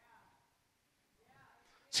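Near silence: a pause in a man's speech, with only faint room tone. His voice comes back in at the very end.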